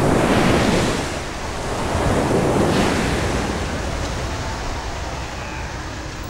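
Ocean surf breaking and washing up a pebble beach, in two surges, one at the start and another about two to three seconds in, then slowly fading.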